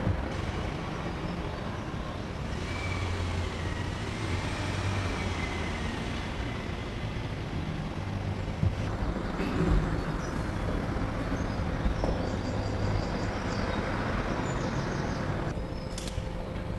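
Steady rumble of road traffic, with a few brief knocks partway through.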